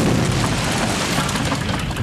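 A loud crash and rumble of a vending machine smashing through a wall and window, with the noise of breaking debris.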